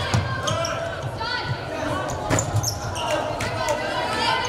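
Live basketball game sound in a gym: a basketball bouncing on the hardwood floor amid the voices of players and spectators.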